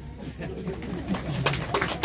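Scattered handclaps from the crowd, starting about half a second in and getting thicker, over low voices.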